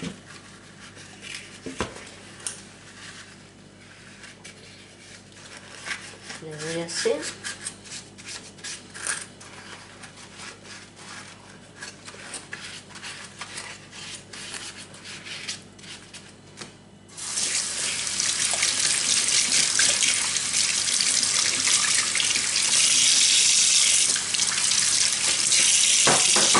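Scattered clinks and knocks of a clear plastic tank and other items being handled in a stainless-steel sink. About two-thirds of the way in, the kitchen tap is turned on and runs steadily into the sink.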